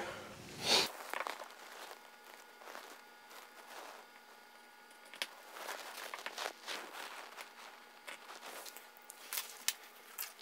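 Faint handling sounds: clothing rustle and light taps and scratches as marks are made on a drywall ceiling, with a slightly louder rustle under a second in.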